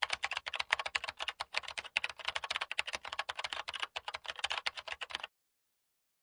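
A fast, irregular run of sharp clicks or pops, many to the second, that stops suddenly about five seconds in.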